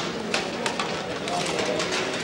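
Hubbub of many men talking at once along a prison food-serving line, with the clatter and clink of metal food containers, trays and utensils.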